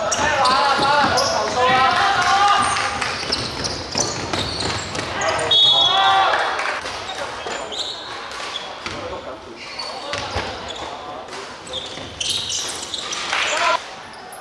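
Sounds of a basketball game in a large hall: players' voices calling and shouting, a basketball bouncing on the court, and sharp knocks of play.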